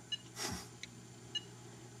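Two short, faint electronic beeps about a second apart from a Logitech Harmony One universal remote as its touchscreen is tapped, with a brief soft rustle between them.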